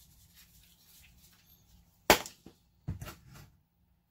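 A sharp click about two seconds in, then two softer knocks about a second later, as a plastic seasoning shaker is handled and put down.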